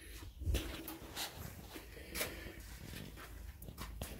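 A few faint, scattered clicks and light knocks over low background noise, about a second apart early on.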